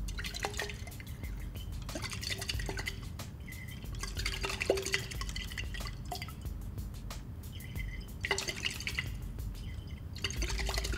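Liquid swirling in a glass conical flask with small glassy clicks and clinks, in several bursts, during a titration with sodium thiosulfate run in slowly near the end point.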